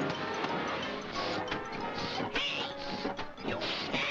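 Cartoon orchestral score with mechanical clattering sound effects from a farm machine, a rhythmic chugging about two strokes a second starting about a second in.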